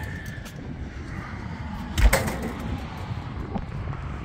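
Steady low outdoor rumble with one sharp knock about two seconds in.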